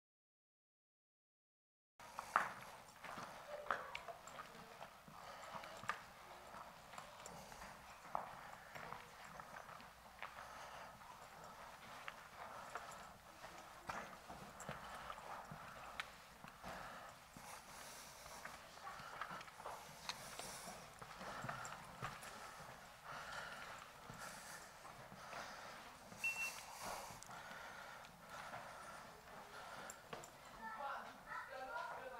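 Faint, irregular footsteps scuffing and crunching on the stone steps and gritty floor of a rock cave, starting after about two seconds of silence.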